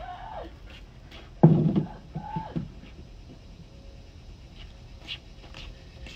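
A dog's brief vocal sounds: a short one at the start and a louder one about a second and a half in, then a quiet stretch with a few faint clicks.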